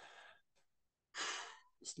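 A man's breaths between phrases: a faint breath at the start, then a louder breathy sigh about a second in, and a short spoken word right at the end.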